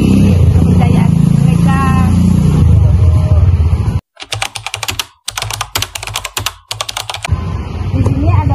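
Rapid clicking of a typing sound effect over a text card, lasting about three seconds from about halfway in, in three runs with two brief breaks. Before it there is a steady low rumble of outdoor background noise.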